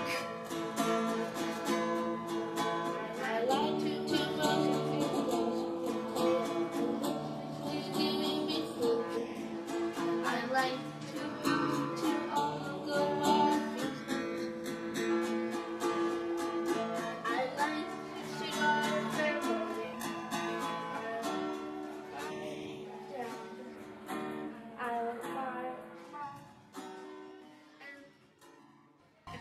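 A Thanksgiving song playing, with strummed plucked-string accompaniment and some singing, fading out near the end.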